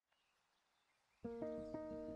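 Faint hiss, then about a second in relaxing background music starts: a steady run of plucked, guitar-like notes over held tones.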